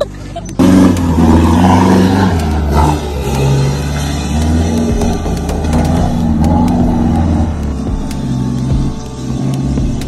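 Pickup truck engine run hard under load as it climbs a steep, rocky dirt slope, starting loud about half a second in, with background music over it.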